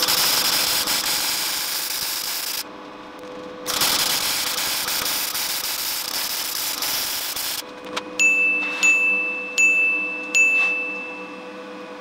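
MIG welding arc from a spool-gun torch laying steel beads: a loud, steady hiss in two runs, the first about two and a half seconds long and the second about four seconds long after a one-second break. Near the end come four evenly spaced, high ringing chime-like tones of one pitch, the last held longer.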